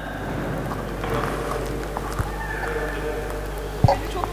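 Room tone of a hall heard through a PA system: a steady low mains hum with faint, indistinct murmuring, and one brief thump near the end.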